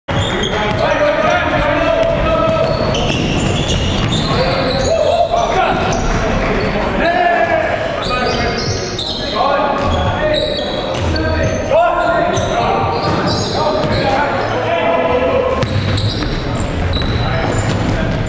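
A basketball bouncing on a hardwood gym floor, repeatedly, during play, mixed with players' voices echoing in a large hall.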